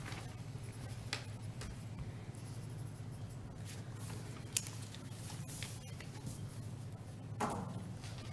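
Faint pen scratching, paper handling and small clicks picked up by desk microphones, over a steady low room hum.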